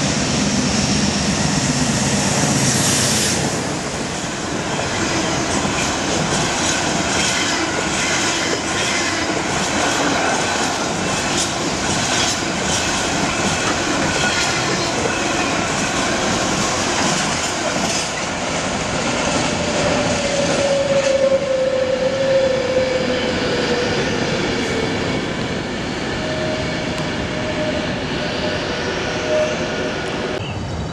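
Locomotive-hauled container freight train passing at speed: the locomotive goes by in the first few seconds, then a long run of container wagons clatters past with a regular beat of wheels over rail joints. Later a thin whine slides down in pitch as the train draws away.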